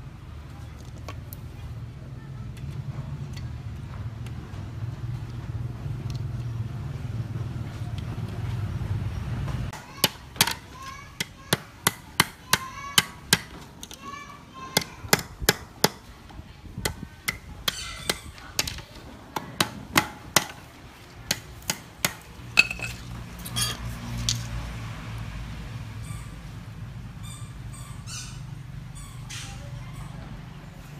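A hammer striking a steel wire laid on a wooden board: a run of sharp metallic taps with short ringing, irregular, one or two a second, starting about a third of the way in and stopping about two-thirds through. A steady low hum comes before and after the taps.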